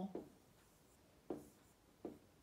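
Faint writing with a pen on an interactive touchscreen whiteboard: the tip rubs and taps on the screen, with one short, sharper tap about a second and a quarter in.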